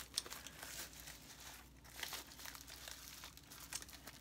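Small parcel's packaging being unwrapped by hand: faint, irregular crinkling with scattered crackles.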